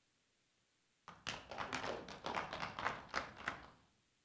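A run of irregular light taps and knocks, starting about a second in and lasting a little under three seconds.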